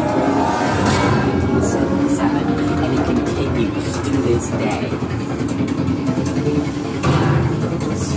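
A loud haunted-house soundtrack: a dense low rumble with indistinct voices in it, swelling louder about seven seconds in.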